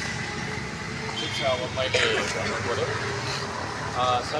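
A motor vehicle running on the street with a steady low rumble, under quiet talk among several people.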